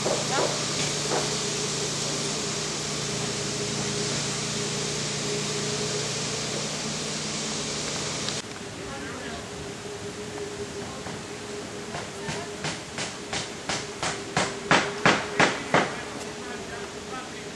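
A steady hiss with a low hum that cuts off suddenly about eight seconds in. After it, a run of sharp knocks, about three a second, grows louder toward the end.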